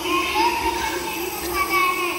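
A child's high-pitched voice, amplified through a microphone and PA, echoing in a large hall, with other children's voices around it.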